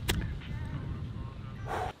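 A man breathing hard, winded after a 5k run, ending in a loud breath out near the end, over a low rumble. A sharp click just after the start.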